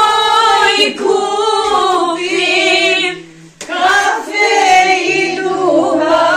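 A group of women singing together in long held notes. The singing breaks off briefly just after the middle, then the next line begins.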